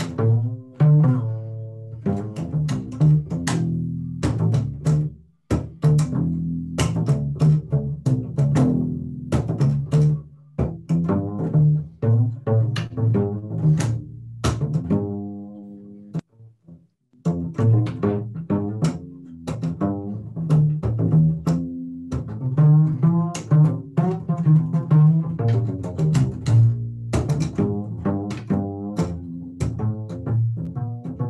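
Solo upright bass played pizzicato: a continuous improvised line of plucked notes, with a short break a little past halfway through.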